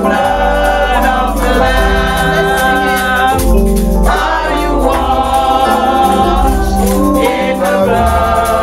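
A woman singing a gospel song with instrumental accompaniment: sustained sung phrases over a steady bass line and a regular beat.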